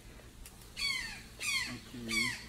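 A bird calling in a series of harsh squawks, each falling steeply in pitch, about two-thirds of a second apart.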